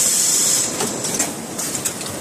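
Automatic garment bagging machine running: a strong hiss of air in about the first half-second, then scattered clicks and rattles from its mechanism over steady machine noise.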